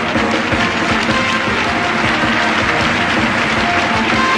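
Live circus band music, with audience applause mixed in.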